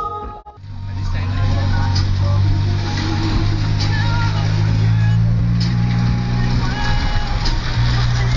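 A road vehicle's engine running steadily in motion, a low drone with road and wind noise, its pitch lifting slightly midway. It begins after a sudden brief drop-out about half a second in.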